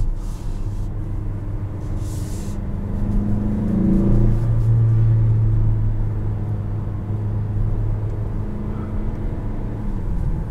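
Engine and road noise inside the cabin of a 2021 Mazda CX-5 with the 2.5-litre turbo four-cylinder, driving along at speed: a steady low hum over tyre noise, with the engine note rising and swelling briefly about four seconds in as it accelerates.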